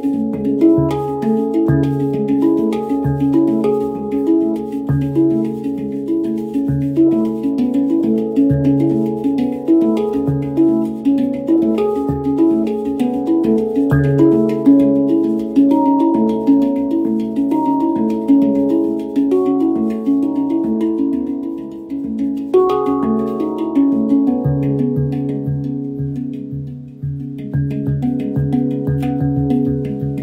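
Handpan played with the fingers: a steady flow of struck, ringing steel notes over a deep low note that pulses underneath. The playing thins and softens late on, then picks up again with quicker strokes near the end.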